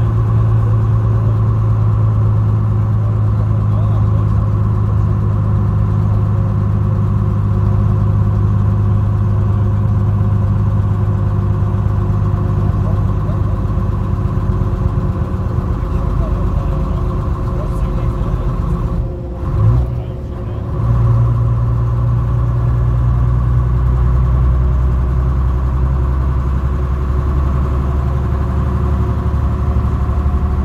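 Bristol RELH coach's engine and drivetrain heard from inside the passenger saloon, a steady low drone while under way. About 19 seconds in the note breaks off for a moment and comes back, typical of a gear change.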